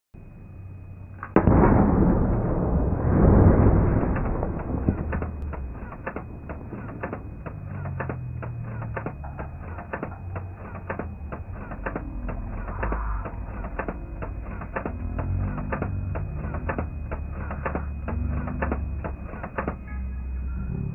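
Saluting cannon firing a single blank charge: a sudden loud boom about a second in, swelling again a couple of seconds later and dying away slowly into a low rumble, with a rapid patter of faint clicks.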